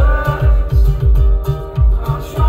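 Live pop music over a concert sound system: a plucked string instrument playing over a heavy, pulsing bass beat, with no vocals at this moment.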